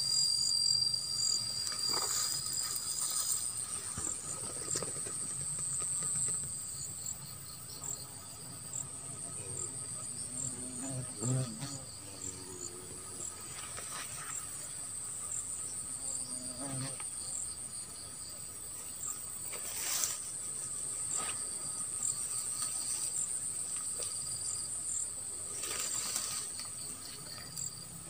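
Field insects chirring steadily in a high pitch with a fast pulsing beat, with a few faint knocks now and then.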